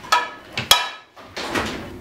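Kitchen cabinet doors being opened and shut: two sharp knocks about half a second apart, then a softer, steadier noise.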